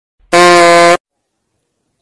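A single horn-like blast held at one steady pitch for under a second, starting about a third of a second in and cutting off sharply: a comic sound effect.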